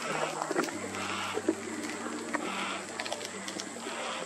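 Yellow-tailed black cockatoo chick giving harsh, wheezy begging cries, about four of them, one roughly every second and a half: its calls for the attention of a parent bird.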